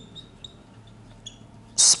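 Marker pen squeaking faintly on a whiteboard while words are written, in a few short, high squeaks.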